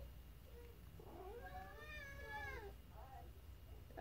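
Domestic cat meowing: one long drawn-out meow that rises and then falls in pitch, starting about a second in, followed by a short, fainter call.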